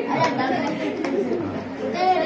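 Several people talking at once in a room: indistinct chatter.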